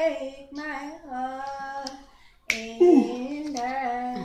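A single voice singing unaccompanied, holding notes and sliding between them. Singing stops briefly, and a sharp click sounds about two and a half seconds in, as the singing starts again.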